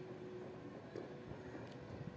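Quiet room background with a faint steady hum, and a couple of faint ticks about a second in.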